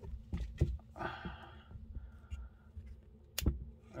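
Handling noise from adjusting the camera's zoom: a few faint taps and clicks, a brief soft rustle about a second in, and one sharper knock a little after three seconds.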